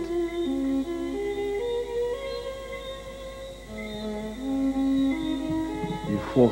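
Slow, soft background music: a melody of long held notes that climbs, dips low around the middle, then rises again.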